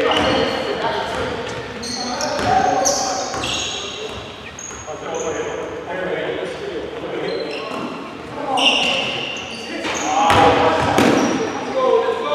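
Live basketball play on a hardwood gym floor: the ball being dribbled, sneakers squeaking in short high squeals, and indistinct shouts from players, all echoing in a large hall.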